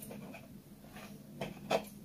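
Hands rubbing and working flour into a wet butter, oil and egg mixture in a wide bowl: soft rustling and scraping strokes, with two slightly louder strokes near the end.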